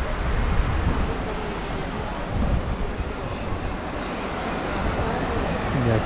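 Wind blowing across the camera microphone: a steady rushing noise with an uneven low rumble, with the sea's surf possibly mixed in.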